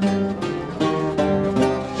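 Acoustic guitars playing the accompaniment of a serenade between two sung lines, strummed in a steady rhythm of roughly two to three strokes a second.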